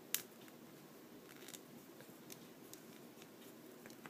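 Faint clicks and light rubbing from a plastic action figure being handled as its hand is twisted at the wrist joint. One sharper click just after the start, then a few faint ticks.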